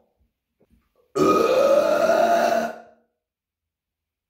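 A man's single long, loud burp, starting about a second in and lasting nearly two seconds before it fades out.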